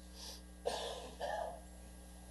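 A man clearing his throat twice in short bursts close to a lectern microphone, after a faint rustle of paper.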